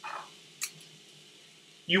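Kitchen utensils being picked up at the stove: a short soft rustle, then a single light click, over faint steady room tone. A word of speech comes in near the end.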